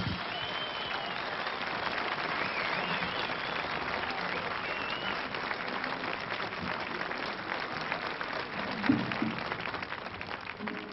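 Large audience applauding steadily after the band's closing chord.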